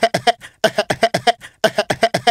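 A voice making rapid, clipped beatbox-style vocal sounds, about six to eight short syllables a second in quick runs broken by brief pauses.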